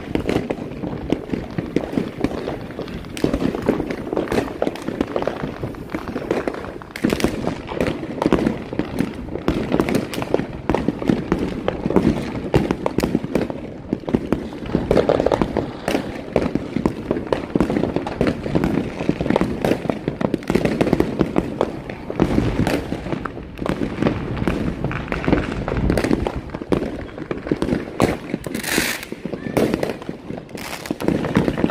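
Many fireworks and firecrackers going off all around in a dense, unbroken run of bangs and crackles, with a short hiss near the end.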